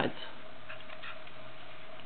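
A few faint, light clicks of small hard plastic solids being turned in the fingers, over a steady low hum.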